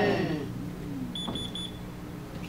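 Three short, high electronic beeps in quick succession about a second in, over a steady low hum. At the start a voice trails off in a falling glide.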